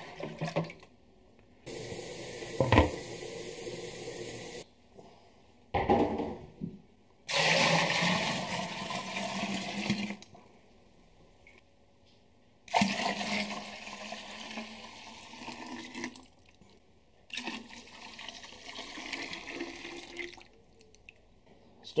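Cold water pouring and splashing into a plastic fermenter of wort, in several stretches that start and stop abruptly, with a sharp click about three seconds in. The wort is being topped up to about 18 litres with cold water to bring it down toward fermenting temperature.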